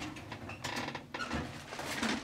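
Crinkling and scraping of a brown paper bag being brought out and handled on a desk, in a few short rustles.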